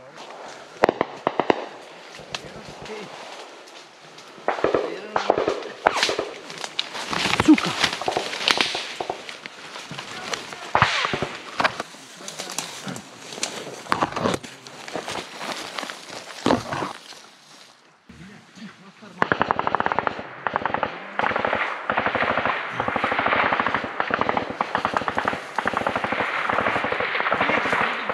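Small-arms firefight: scattered single shots and short bursts of gunfire. About two-thirds of the way in, after a brief lull, it becomes a long stretch of rapid automatic fire.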